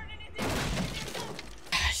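A sudden crash like something breaking about half a second in, a rush of noise that lasts around a second, from a horror film's soundtrack; a shorter burst of noise follows near the end.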